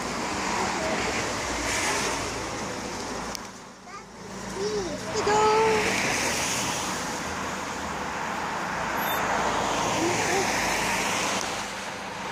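Rushing outdoor noise that swells and fades, dipping briefly about four seconds in, with a few short bits of a woman's voice.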